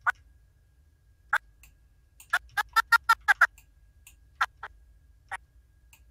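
Sharp clicks from computer controls: one click, a quick run of about six clicks in just over a second, then a few single clicks spaced apart, as frames are stepped through in animation software.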